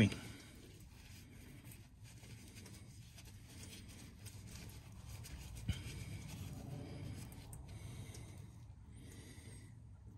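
Faint rustling and rubbing of a cloth shop towel wiping oil off a magnetic drain plug, with one small click a little past halfway.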